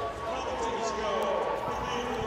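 Arena background sound: indistinct voices and crowd noise. A faint steady tone runs through most of it.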